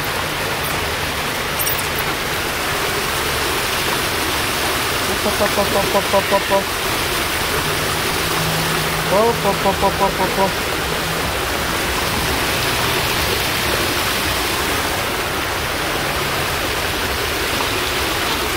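Steady rush of running water, an even hiss that holds at one level throughout.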